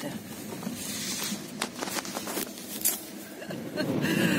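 Car cabin noise with the engine running as the car moves off slowly, with a few faint clicks and knocks.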